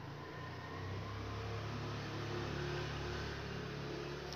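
Steady low hum of an engine running, swelling slightly about a second in.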